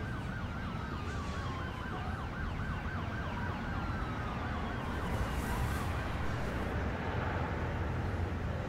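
An emergency vehicle siren in a fast warbling yelp, slowly falling in pitch and fading out about six or seven seconds in, over a steady low street rumble. A short hiss sounds around five to six seconds in.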